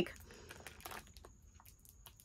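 Faint crinkling and small clicks of a clear plastic bag of slime being handled, thinning out after about a second.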